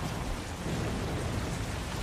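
Steady rushing, rumbling noise from the anime's soundtrack, an even roar like rain or a distant storm, with no voices over it.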